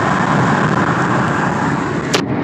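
Steady road and wind noise of a car driving at highway speed, heard from inside the car: a loud, even rush with no engine note standing out.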